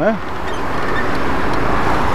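Road traffic noise: a car's tyre and engine noise swelling as it passes close by toward the end, over a steady low rumble.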